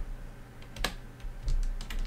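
Several clicks of computer keyboard keys being pressed, with a quick run of them near the end, and a low thump about one and a half seconds in.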